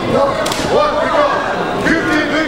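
A single sharp smack of a kickboxing strike landing about half a second in, over voices in the hall.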